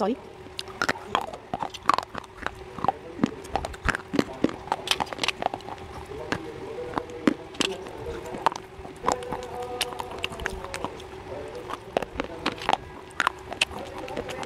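Dry slate pencils bitten and chewed right at a clip-on microphone: an irregular string of short, sharp, crisp crunches, several a second at times, over a steady low hum.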